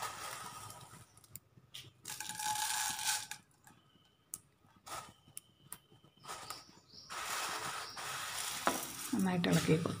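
Dry vermicelli sizzling as it drops into hot ghee in a frying pan. The hiss comes and goes and is steadiest in the last few seconds.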